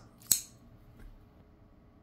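Lockback pocket knife blade snapping open with a single sharp metallic click about a third of a second in, then a faint tick.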